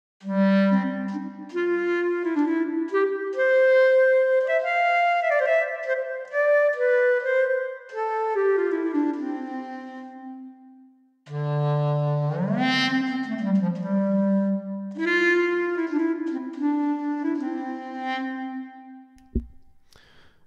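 A section of virtual clarinets, Audio Modeling's SWAM clarinets (version 2), playing a slow legato passage in several-part harmony. The first phrase fades out about halfway through. After a brief pause a second phrase begins, its lowest voice sliding upward early on, and it dies away near the end.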